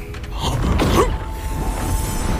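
Sound effects for a fire-phoenix attack in an animated fight: a low rumble, with a gliding, creaking swell about a second in, then a held tone, over background music.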